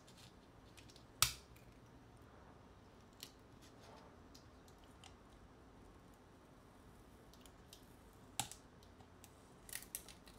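Copper foil tape being peeled off a small camera's lithium polymer cells: a faint crinkling rustle with a few sharp clicks, the loudest about a second in and others near the end.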